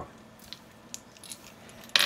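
A few light clicks of small plastic LEGO bricks being handled and set down on a tabletop, spaced apart with quiet between.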